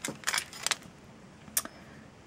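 A few light clicks and rustles, about four in all, as a metal nail stamping plate still in its blue protective film is handled and turned over in the hands.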